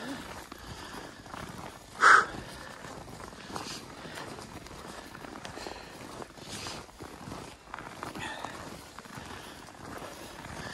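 Footsteps crunching on packed snow while walking, with one brief loud cry or shout about two seconds in.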